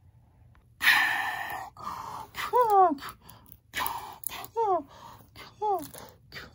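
A person's voice making play sound effects: a loud breathy, hissing burst about a second in, then short vocal cries that slide down in pitch, repeated roughly once a second.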